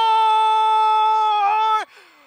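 Football commentator's long, held shout of "Goal!" in Korean, sustained on one steady pitch until it cuts off near the end.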